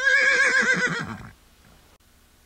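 A horse whinnying: one quavering call about a second and a half long that drops in pitch as it ends.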